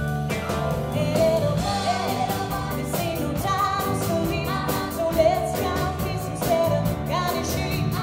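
A live sixties pop band: a female lead voice singing over electric guitar, bass guitar, keyboard and a drum kit with an even cymbal beat. The voice comes in about half a second in.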